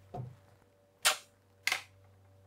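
Two sharp clicks about half a second apart, near the middle and near the end, with a soft knock just before them, over a faint low steady hum.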